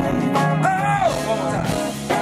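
Live funk-soul band playing, with electric guitar and drums, and a singer's voice sliding up and back down on one note about half a second in. The low end is distorted by the stage subwoofers.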